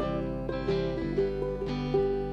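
Instrumental bar of a folk song: plucked acoustic strings picking a melody of held notes, a new note about every half second, between sung lines.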